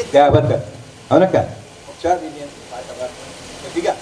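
A man speaking into a handheld microphone in short phrases separated by pauses, over a steady background hiss.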